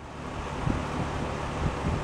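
Rheem three-ton air-conditioner condenser running: a steady fan rush over a low hum, fading in over the first half second, with wind on the microphone adding low thumps.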